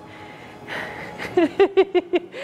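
A woman laughing: a breathy intake about a second in, then a quick run of short laughs.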